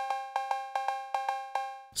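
Elektron Analog Rytm MK2's analog cowbell sound, triggered from a pad about a dozen times in quick, uneven succession. Each hit is a two-pitched metallic ping that rings on into the next, and the run stops just before the end.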